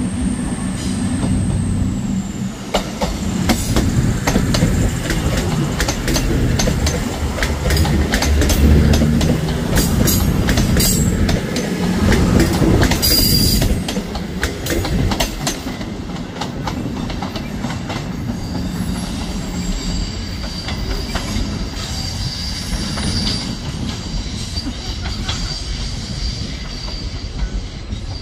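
CrossCountry Voyager diesel multiple unit passing close, its underfloor diesel engines rumbling as its wheels click over the track. A short high wheel squeal comes about halfway through. After that the train is quieter and steadier, with a faint high wheel squeal as it curves away.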